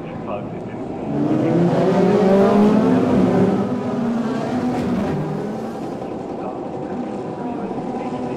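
A field of Formula Renault 2.0 single-seaters accelerating together, their 2.0-litre four-cylinder engines climbing in pitch from about a second in. The engines run over a steady hiss of tyres throwing spray off the wet track.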